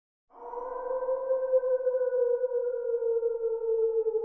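A single held synthesizer note, coming in just after the start and slowly sliding down in pitch.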